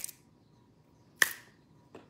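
Finger snaps: three short, sharp snaps, the loudest about a second in.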